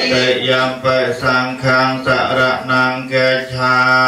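A congregation of voices chanting in Pali in unison, a Buddhist recitation held on one steady pitch. The chant moves in slow, even syllables about two a second.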